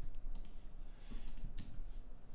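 A few scattered clicks of computer keyboard keys, as a port number is typed in and a request is sent.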